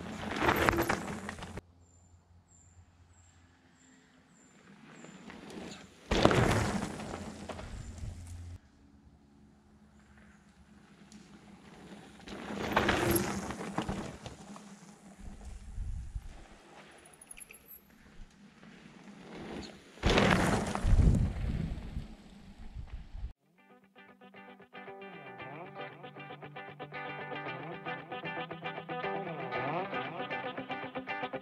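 Electric mountain bikes riding past close by on a dirt forest trail, four times, each pass a rush of tyre noise that swells and fades within two or three seconds. About two-thirds of the way in, guitar music starts and carries on.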